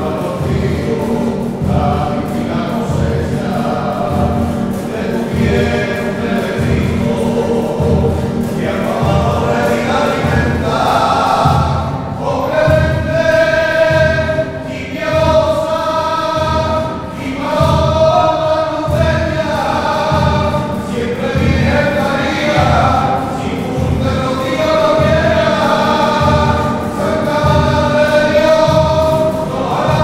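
A church choir singing a hymn together, accompanied by acoustic guitars strummed in a steady beat. The voices grow fuller and louder about halfway through.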